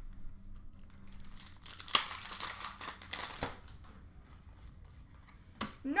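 Foil wrapper of a 2020 Upper Deck CFL football card pack tearing and crinkling, loudest about two to three and a half seconds in, with a few sharp ticks.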